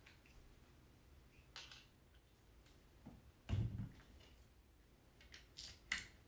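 Faint handling of the metal cage parts, a side strut with its molly and an aluminum rod: a soft scrape, a dull thud about three and a half seconds in, and a short sharp clack near the end.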